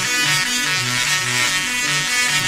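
Double resonant solid state Tesla coil (DRSSTC) playing a MIDI melody with its sparks, run on a 260 V bus: a quick run of short notes, each a rich tone that steps to a new pitch about every quarter second.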